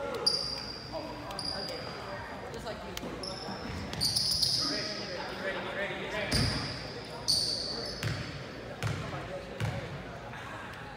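Basketball shoes squeaking on a hardwood gym floor in several short, high squeaks, with a basketball bouncing a few times in the second half. Voices talk over them in the hall.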